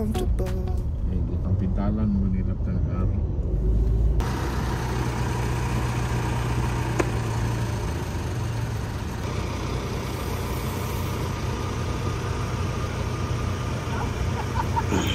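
Car engines idling with traffic rumble: a steady low hum under a wash of noise, broken by a single sharp click about seven seconds in.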